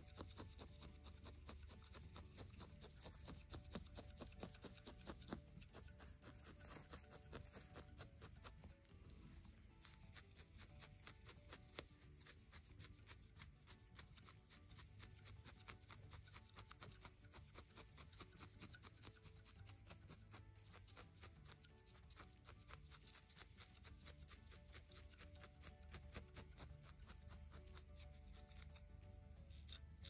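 Faint, rapid, steady pokes of barbed felting needles in a handheld tool, jabbing into wool to felt a gnome's hat onto its head.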